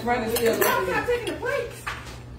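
Fork and dinner plate clinking while people talk, with one sharp clink near the end.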